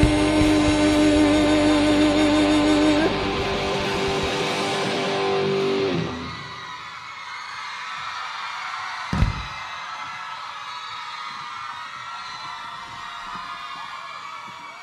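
Live pop-rock band playing loud, ending on a held chord with guitars that cuts off about six seconds in. A crowd's noise follows, with a single low thump a few seconds later.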